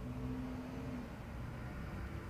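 Quiet room tone: a faint, steady low hum with light background hiss.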